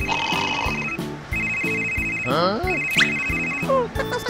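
A high electronic ringing tone in three trilling bursts of about a second each, over background music with a steady beat. A short gliding cartoon sound effect falls between the second and third bursts.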